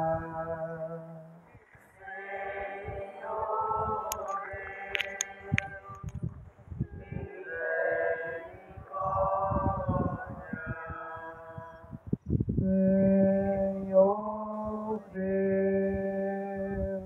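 Voices singing a slow religious hymn without instruments, in phrases of long held notes. There are short breaks about two seconds in and again about twelve seconds in.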